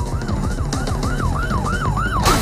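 Police siren yelping in fast rise-and-fall sweeps, about four a second, over music with a steady driving beat.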